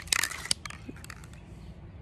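Plastic and metal clicks and rattles as an aerosol spray-paint can is handled and its cap worked off, a quick cluster in the first half second. Then only faint steady background.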